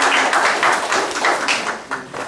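Audience applauding, the clapping thinning and dying away near the end.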